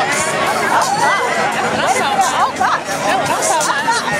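Several voices talking over one another close by in a dense crowd, with music playing underneath.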